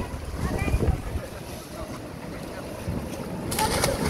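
Sea waves surging and breaking against rocks, with wind buffeting the microphone. Near the end a sudden louder rush of splashing water.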